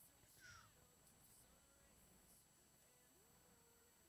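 Near silence: faint room tone, with a faint short falling tone about half a second in.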